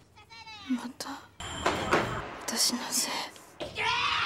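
A person's voice: a short high-pitched vocal sound that bends up and down in the first second, then a stretch of noisy sound, with speech starting near the end.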